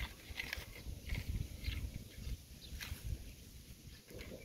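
Small plastic toy wheel loader pushed by hand through dry dirt: its bucket and plastic wheels scrape and crunch the soil in a series of short scratches.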